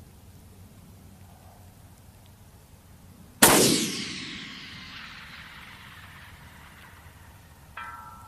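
A single shot from a 6mm Creedmoor bolt-action rifle with a 105-grain Hornady BTHP match load, about three and a half seconds in, its report rolling away over a couple of seconds. About four seconds later comes a faint short ring of the bullet striking the steel plate at 1050 yards.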